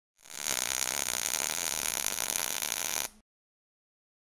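Intro sound effect for a logo animation: a dense, noisy sound that swells in within half a second, holds steady, and cuts off suddenly about three seconds in.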